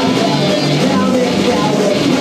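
A punk rock band playing live and loud: distorted electric guitars, bass and drums in a dense, steady wall of sound.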